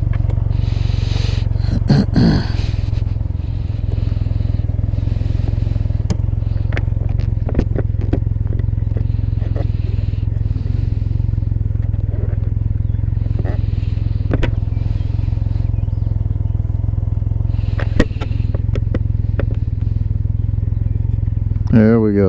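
Can-Am Ryker 900's three-cylinder engine idling steadily at a standstill. Over it come scattered clicks and knocks and soft rubbing close to the microphone as a cloth is worked over the machine.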